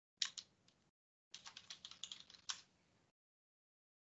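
Faint typing on a computer keyboard: two clicks just after the start, then a quick run of about a dozen keystrokes lasting just over a second as a name is typed into a chat box.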